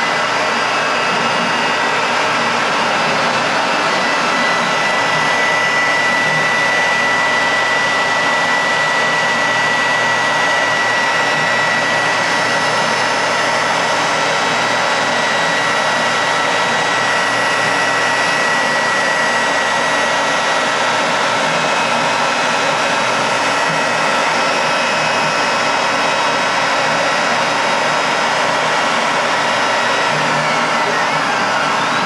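ShopBot CNC router spindle running steadily while its small bit cuts a 45-degree chamfer into a plastic part, over the continuous rush of the vacuum hold-down. A steady high whine sits in the sound through the middle of the cut.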